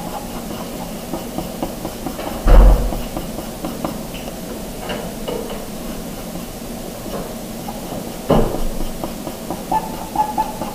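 Pencil scratching on paper in short, light strokes as small pine trees are drawn, with a dull thump about two and a half seconds in and another near the end.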